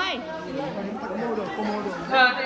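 Several people talking at once in the background: overlapping chatter of voices.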